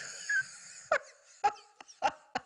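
A woman laughing: a long wheezy breath, then short, sharp bursts of laughter coming faster toward the end.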